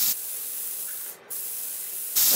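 Dental handpiece spinning a soft flex disc against a provisional crown, a steady grinding hiss that breaks off briefly about halfway through.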